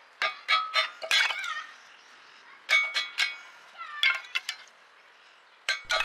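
Wood being split on a homemade kindling splitter built from an old brake disc: sharp strikes driving pieces onto the steel blade, with short metallic ringing and split sticks clattering against the frame. The strikes come in three quick groups, near the start, around three seconds in and around four seconds in.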